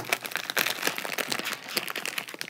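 Chip bag crinkling as its top is folded and clamped into the clips of a plastic pants hanger: a run of small, irregular crackles.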